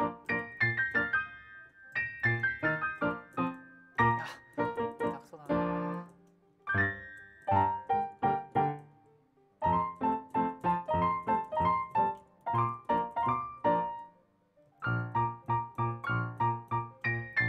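Solo piano playing a classical piece: quick rhythmic chords over a bass note on each beat, in phrases that stop briefly about six seconds in, near ten seconds and again shortly before the end.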